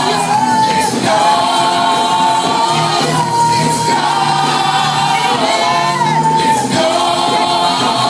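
Live gospel praise and worship singing: a group of singers holding long notes together over music, the pitch stepping to a new note every second or two.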